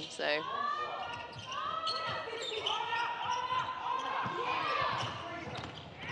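A basketball dribbled on a hardwood court during live play, with players' voices calling out and high-pitched shoe squeaks on the floor.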